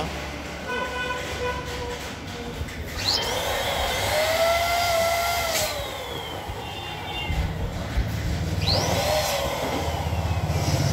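Latex balloons squeaking as hands press, rub and twist them together onto the frame: several squeals that slide up and then down in pitch, the clearest about three seconds in and again near the end. A low rumble, like passing traffic, grows louder in the last few seconds.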